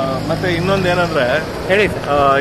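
A man talking in an untranscribed language, with a steady low hum underneath.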